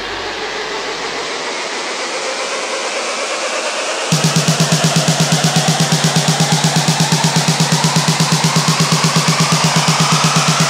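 Electronic dance music build-up from a rave mix: a rising noise sweep with a tone gliding slowly upward. About four seconds in, a rapid, evenly pulsing bass comes in abruptly and drives on under the rising sweep.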